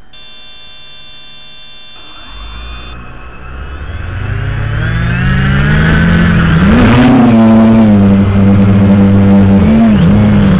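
Traxxas Aton quadcopter's electric motors and propellers spinning up for takeoff: a few seconds of steady tones, then a rising whine that grows much louder and holds at high throttle with small swells in pitch as it lifts off.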